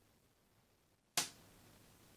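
A single sharp click or knock about a second in, fading out within a fraction of a second, over quiet room tone.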